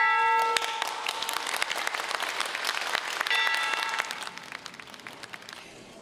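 A large bronze bell struck with a mallet, ringing out at the start and again about three seconds in, over steady applause that fades toward the end.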